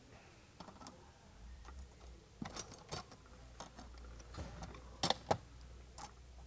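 Scattered small metal clicks and taps, with two sharper ones about five seconds in, as pliers bend and curl over a cotter pin on a vertical rod panic device's rod connection.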